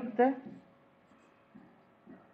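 A woman's voice finishing a word, then faint soft sounds of a stylus writing on an interactive whiteboard.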